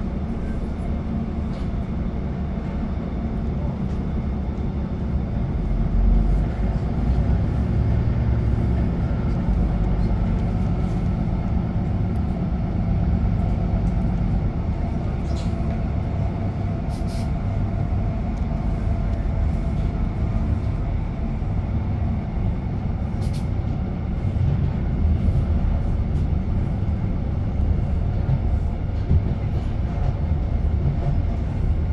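Steady interior rumble of a Class 156 diesel multiple unit in motion: its underfloor diesel engine and the wheels running on the rails, heard from inside the passenger saloon. A few faint ticks sound over it in the middle of the run.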